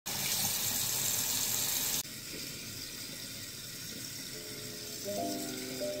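Tap water running into a bathroom sink and over a hand, a steady rush that stops abruptly about two seconds in. Background music with held notes comes in near the end.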